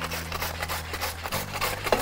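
Fresh white cabbage pushed back and forth over a plastic mandoline slicer set to about 3 mm, shredding it. Rhythmic rasping strokes, about four a second.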